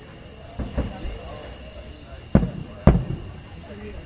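Aerial firework shells bursting: a pair of booms close together just under a second in, then two louder booms about half a second apart near two and a half and three seconds in, each trailing off into echo.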